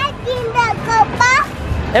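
High-pitched young children's voices over background music.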